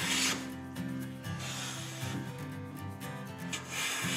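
Hand plane with a freshly honed iron cutting full-length shavings from a board edge: one swishing stroke ends just after the start and another begins near the end, with quieter rubbing between.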